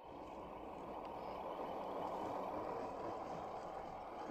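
1/10-scale RC Toyota Land Cruiser (HB-ZP1008) driving over grass and dirt toward the camera: a steady low whirring of its electric motor and gears, growing a little louder over the first couple of seconds as it comes closer.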